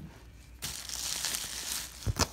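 Plastic bubble wrap crinkling as it is handled, starting about half a second in.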